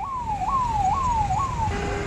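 Police vehicle siren, an electronic siren sounding a rapid falling sweep that repeats about twice a second, four sweeps in all, over low traffic rumble. It stops near the end and gives way to a steady tone.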